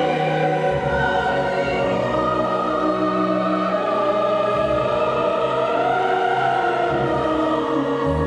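Opera being performed: several voices singing long, wavering held notes together over sustained low orchestral notes.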